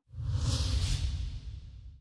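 Whoosh sound effect of a TV news channel's logo ident: a rushing swish over a low rumble that swells in just after the start, peaks about half a second to a second in, and fades out near the end.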